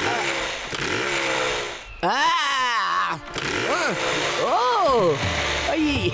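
A man's several short, strained rising-and-falling cries as he works a chainsaw, with the saw's engine noise underneath.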